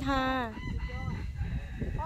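A rooster crowing faintly, heard just after a woman's short spoken 'kha'.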